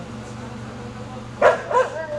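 A dog barking twice in quick succession, two short sharp barks near the end.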